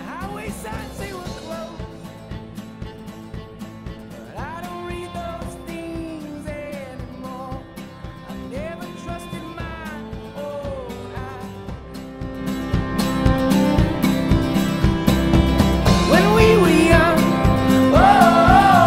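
Background country-style song with guitar and a gliding melodic lead, swelling louder about two-thirds of the way through.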